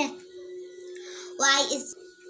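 A girl singing: a held note breaks off at the start, then a pause with a faint steady hum, and a short vocal phrase about one and a half seconds in.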